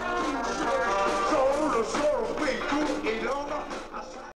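Rock band playing live with electric guitar, its notes bending and sliding in pitch; the level drops a little near the end.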